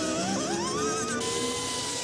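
A pneumatic air grinder runs on sheet metal: a steady whine over a dense grinding hiss, with background music underneath.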